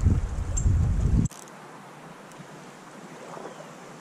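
Wind buffeting the microphone with a low rumble, cutting off abruptly about a second in, followed by a faint steady hiss.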